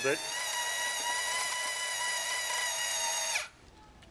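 LEGO NXT motor driving the paper conveyor belt through its rollers, a steady geared whine that cuts off suddenly about three and a half seconds in. It runs because the ultrasonic sensor is being set off by the hand near it, and it stops when the timed run ends.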